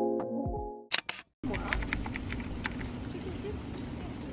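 Background music with a beat fades out in the first second, followed by two sharp clicks and a brief gap. Then steady outdoor street ambience with scattered light taps and faint voices.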